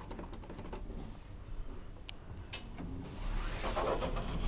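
A quick run of light clicks from the Thyssen lift's car-panel push buttons being pressed, then two single clicks. From about three seconds in, a rising rumble and whoosh as the lift's sliding doors start to move.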